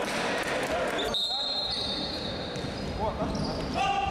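An indoor futsal game heard in an echoing sports hall: players calling out, the ball thudding on the hard floor, and high squeaks. The sound drops out sharply about a second in.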